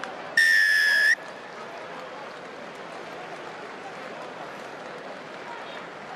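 A referee's whistle gives one steady blast of just under a second, awarding the try just scored. Crowd noise from the stands goes on underneath.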